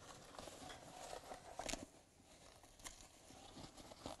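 Near silence with faint rustling of the fabric cupboard door being handled, and two soft clicks.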